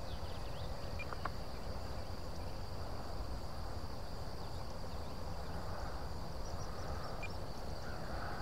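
Steady high-pitched chorus of crickets in the field, one unbroken drone, over a low rumble of outdoor noise, with a few faint chirps and ticks.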